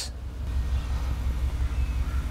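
A steady low rumble with faint background hiss.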